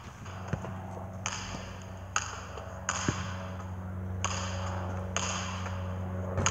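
A basketball bouncing on a paved outdoor court, a couple of dull thuds, over a steady low hum and repeated bursts of hiss that start and stop abruptly.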